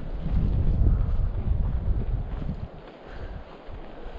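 Wind buffeting the microphone: a low, uneven rumble that eases off about two and a half seconds in.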